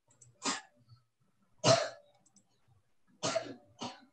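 A person coughing four short times into a video-call microphone. The second cough is the loudest.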